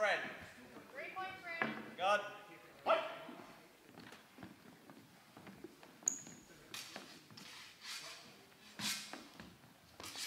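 Voices calling out in a large, echoing sports hall, then several scattered sharp knocks and one brief high ping in the second half.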